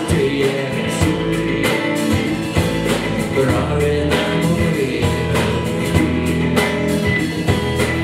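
Live rock band playing a song: strummed acoustic-electric guitar, electric guitar and drums, with singing.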